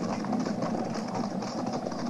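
Sound effect of a mounted cavalry column approaching: many horses' hoofbeats in a steady, rapid rhythm.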